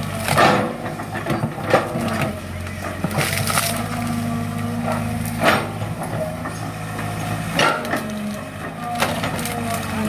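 Kobelco Yutani SK045 excavator's diesel engine running steadily while its bucket tears out shrubs and roots, with a sharp crack of snapping wood every second or two.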